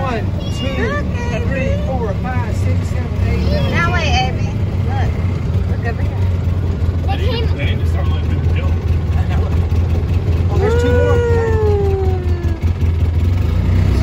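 Engine of an open side-by-side utility vehicle running with a steady low hum, with voices talking over it and one long falling vocal call near the end.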